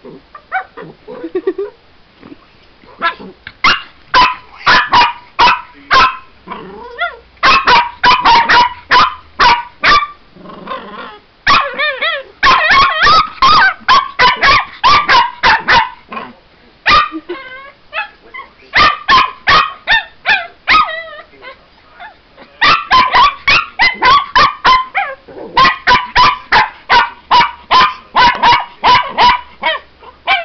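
Small white puppy barking at an animatronic toy pig that it dislikes: volleys of quick, high, sharp barks, several a second, broken by short pauses.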